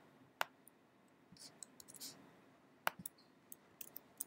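Faint clicks from a computer's keyboard and mouse as text is copied and pasted: two sharp clicks about two and a half seconds apart, with a few fainter ticks between.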